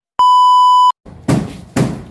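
A single steady, high-pitched test-tone beep of the kind that goes with TV colour bars, lasting about three-quarters of a second. About a second in, a regular beat of about two hits a second starts.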